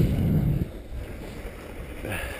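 Wind buffeting the microphone of a skier's body-worn camera, a low rumble loudest in the first half second, then fainter.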